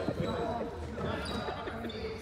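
Indistinct voices of players and onlookers echoing in a large sports hall.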